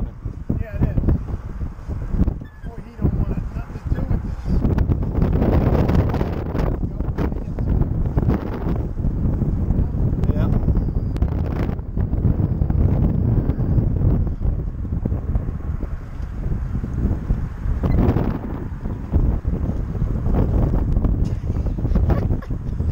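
Wind buffeting the microphone, a loud low rumble that swells and eases in gusts.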